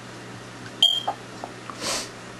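Marker writing on a whiteboard: a short, high-pitched squeak of the felt tip about a second in, then a softer hissing stroke near the end.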